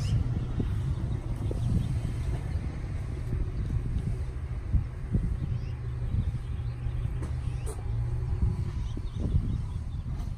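Low, steady engine rumble of a widebody first-generation Toyota 86 sports coupe's flat-four as the car creeps forward at walking pace.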